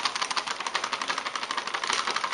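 Plastic bag of light dried malt extract crinkling as the powder is poured and shaken out into a bowl, a dense, rapid crackle.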